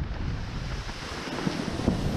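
Wind buffeting the microphone over water rushing and slapping under a windsurf board planing at speed, with a couple of brief splashes in the second half.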